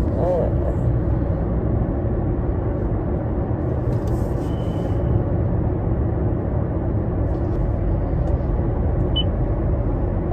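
Steady rumble of road and car noise inside a moving car's cabin.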